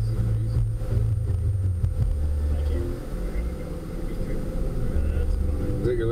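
Steady low rumble of a passenger van's engine and road noise, heard from inside the cabin, with faint voices in the background.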